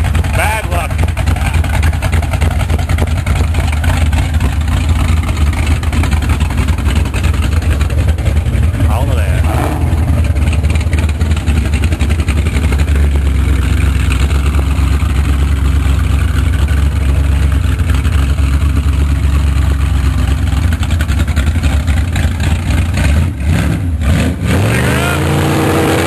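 Hot-rod gasser's small-block Chevy V8 on open zoomie headers, running loudly at low revs with a deep rumble as the car creeps along. Near the end it revs up, rising in pitch, as the car pulls away.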